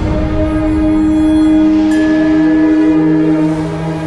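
Music: an instrumental passage with no vocals, a held chord of several steady notes, a lower note coming in about two seconds in.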